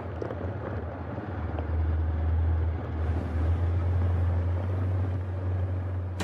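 Humvee's diesel V8 heard from inside the cab while driving, a steady low drone that grows a little louder about two seconds in.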